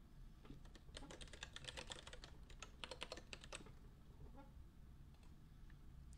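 Faint typing on a computer keyboard: two quick runs of keystrokes in the first few seconds, then a few scattered clicks.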